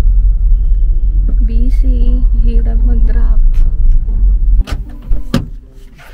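Loud, low rumble of a car's cabin while driving, which drops away suddenly about four and a half seconds in, followed by two sharp clicks.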